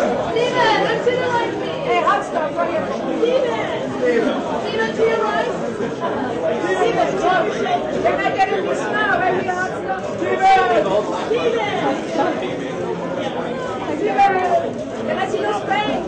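Babble of many overlapping voices: press photographers calling out and chattering to the celebrities posing at a photo wall.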